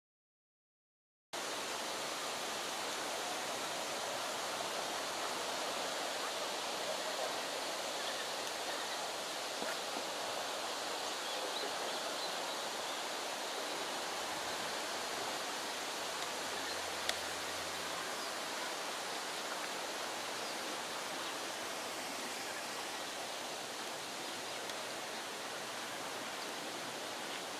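Steady outdoor background hiss with no distinct calls, starting after about a second of silence; a single faint click about two-thirds of the way through.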